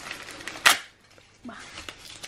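Crinkly rustling of a plastic-wrapped gift being handled, with one sharp, loud snap about two-thirds of a second in.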